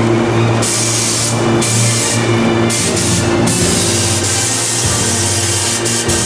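A steady low hum with repeated bursts of hiss that start and stop every second or so, the longest lasting from about three and a half seconds in until near the end.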